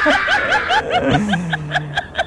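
High-pitched laughter in a rapid run of short 'ha' bursts, about eight a second, with a steady low tone coming in about a second in.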